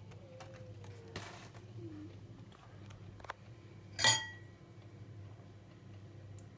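A single sharp clink with a brief ringing tail about four seconds in, over a low steady hum.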